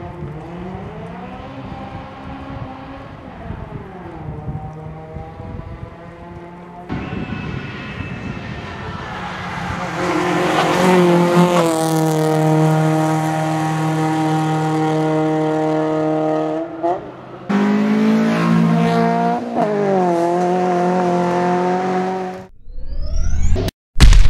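Honda Civic VTi rally car's four-cylinder engine at high revs on a stage, the pitch climbing and dropping back again and again through gear changes. It is fainter at first, then much louder from about ten seconds in, and fades out near the end.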